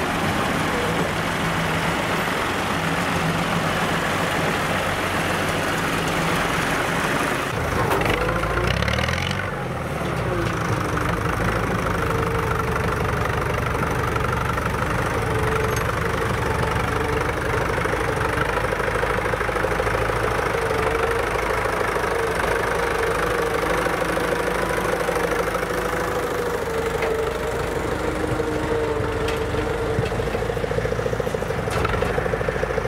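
Old farm tractor engines running: first a John Deere tractor, then, after a change about eight seconds in, a Fiat tractor pulling a Stoll sugar-beet harvester at work, with a steady whine over the engine.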